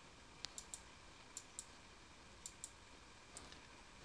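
Computer mouse button clicked in quick pairs, about four times in a row, paging through a document; faint clicks over quiet room hiss.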